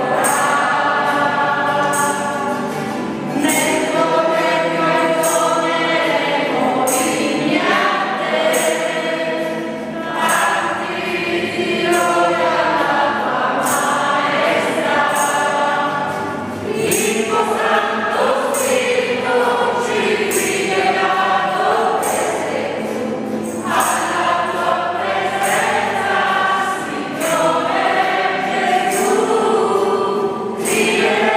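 A congregation singing a worship hymn together, with musical accompaniment and a steady beat of bright, light strikes about once a second.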